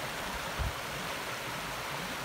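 Shallow stream water rushing steadily over rocks in white riffles.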